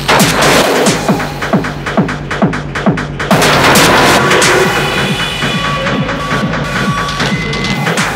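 Industrial hardcore techno track: a fast, steady kick drum under distorted noisy layers that swell about three seconds in, then give way to high sustained synth tones.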